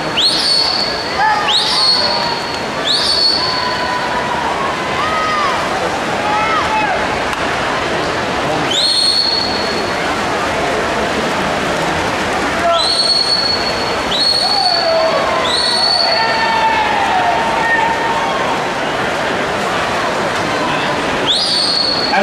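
Spectators cheering and yelling for swimmers during a freestyle race in an indoor pool hall, with loud, shrill whistles cutting through: three in quick succession near the start, one partway through and a cluster of several later on.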